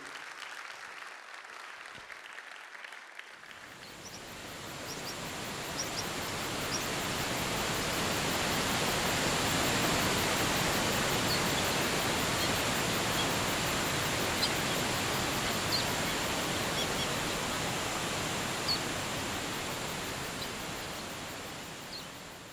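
Rushing water of a waterfall fading in a few seconds in and settling into a steady rush, with a few short, high bird chirps scattered over it; it fades away at the end.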